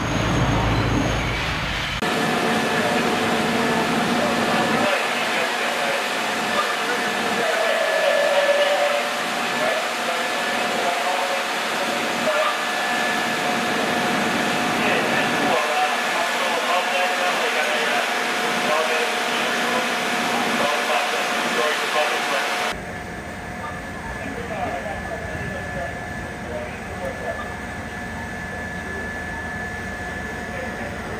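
Steady street noise with a constant machine hum carrying two steady tones. It changes abruptly twice, about two seconds in and again near the end, where it turns quieter.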